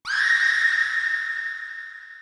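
A high-pitched sound effect closing a trap instrumental: it starts suddenly with a quick upward sweep, holds, then fades out over about three seconds, with a faint low rumble beneath it.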